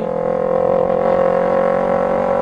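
Kawasaki Ninja 250R's parallel-twin engine running at steady revs while the bike cruises, a constant even-pitched drone.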